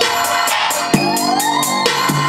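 Detroit trap-style beat playing back from Propellerhead Reason. Fast, even hi-hats and kick drums from the Kong drum machine run over a layered organ and lead-whistle melody. A rising pitch glide comes in the second half.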